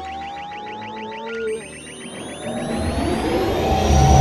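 Synthesized sci-fi sound effects: a rapid pulsing chatter with thin rising electronic whistles, then a deep rumble that swells steadily louder toward the end.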